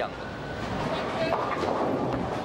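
Bowling alley din: a steady low rumble of bowling balls rolling down the lanes, with faint voices in the background.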